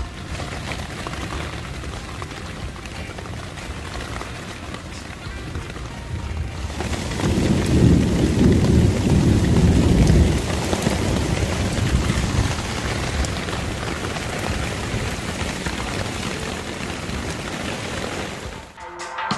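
Steady rain falling on a Durston X-Mid tent and the wet ground around it. About seven seconds in, thunder rumbles for roughly three seconds, the loudest sound in the stretch.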